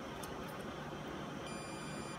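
Digital multimeter in continuity mode giving a steady high beep from about one and a half seconds in, as its probe touches a jumper wire's metal pin: the beep signals a short, an unbroken connection. A couple of faint clicks come before it.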